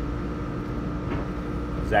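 A steady mechanical hum: a low drone with a faint, constant higher whine above it.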